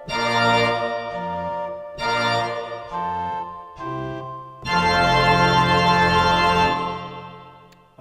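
Samick SG450 digital piano playing its church organ voice: a run of held chords, then a loud, full chord about four and a half seconds in that holds for about two seconds and fades out near the end. It is a velocity-layered voice, in which harder playing brings other instruments in over the organ.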